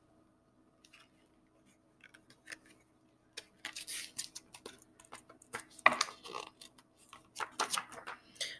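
A picture book's paper pages rustling and its covers giving soft irregular clicks as the book is handled and a page is turned. The sounds begin about three seconds in, after a near-silent pause.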